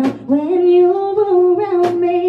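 A woman singing one slow, drawn-out line into a microphone over a sparse live band, with a sharp percussion hit at the start and another near the end.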